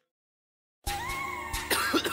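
Dead silence for almost a second between tracks, then a rap track's beat starts suddenly with bass and a synth line. Near the end there is a cough, followed by a rapper's ad-lib "oh".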